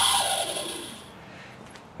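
Compact router motor winding down after being switched off: its whine falls slightly in pitch and fades away within about a second.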